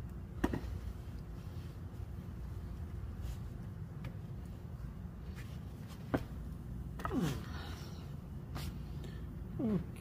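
A few sharp knocks as a Toyota 18R cylinder head is lifted and tilted on a wooden block, over a steady low hum. Two short falling groans come about seven and nine and a half seconds in.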